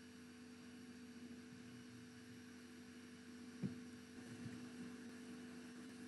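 Near silence with a faint steady electrical hum in the recording, and one faint click about three and a half seconds in.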